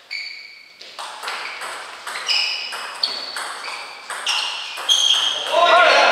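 Table tennis rally: the plastic ball ticking sharply off the paddles and bouncing on the table, a run of about ten short ringing clicks, some close together, every half second or so. Voices rise near the end as the point finishes.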